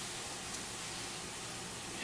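Steady, even hiss of room tone and recording noise, with no distinct event.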